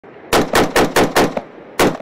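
Rifle fire: a quick run of five shots, about four a second, then a single shot near the end.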